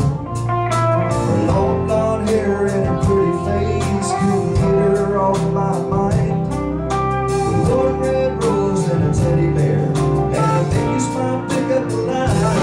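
Live band playing an instrumental break of a blues-tinged country-rock song: electric guitar lead over a drum beat, bass and keyboard, with one note held for several seconds in the middle.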